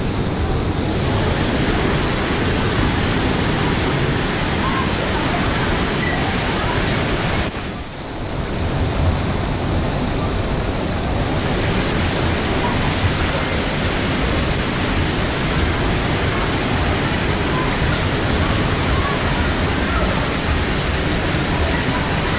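Water running steadily down a water slide's open runout trough and splashing, a constant rush that dips briefly about a third of the way in.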